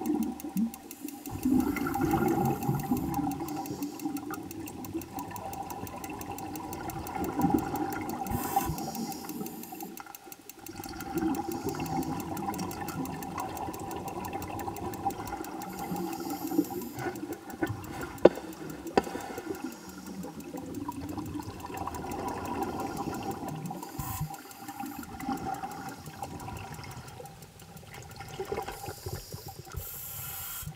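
Scuba regulator exhaust bubbles recorded underwater, a gurgling rush that swells and fades in repeated bursts with the breaths, over a steady tone.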